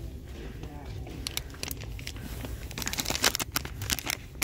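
Soft plastic wrapper of a pack of cleansing face wipes crinkling as it is handled: a run of small crackles, busier in the second half.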